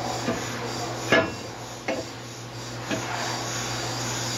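A freshly resurfaced brake rotor disc being fitted onto a wheel hub: metal scraping and three sharp clunks about a second apart, the first the loudest.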